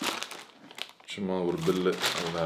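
Plastic mailer bag crinkling as it is handled and pulled off a boxed microphone. A man's voice follows about a second in.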